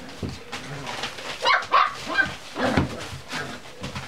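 Cocker spaniel puppies play-fighting, giving a few short, high yips and small barks, loudest and bunched together from about a second and a half to three seconds in.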